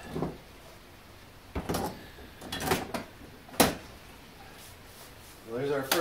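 Clamps and wood strips being handled on a wooden jig: a few knocks and short sliding clatters, the sharpest knock about three and a half seconds in.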